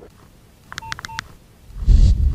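Two short electronic beeps, like telephone keypad tones, about a second in. Near the end a low rumble swells into a deep bass hit as the show's ident begins.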